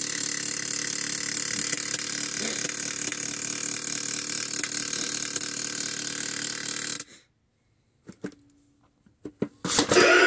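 The drive motor and gears of a pop-up zombie animatronic run with a steady whirring hum, then cut off suddenly about seven seconds in. A few light clicks follow.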